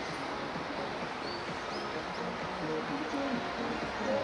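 Outdoor city street background: a steady wash of noise with distant voices of passers-by, and a couple of short high chirps about a second in.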